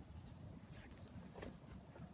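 Faint low wind rumble on the microphone, with a few soft scuffs and clicks of dogs moving about on gravel.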